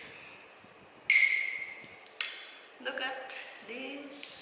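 A metal spoon clinks twice against a stemmed glass dessert cup, about a second apart, each clink ringing briefly before it fades. A voice sounds near the end.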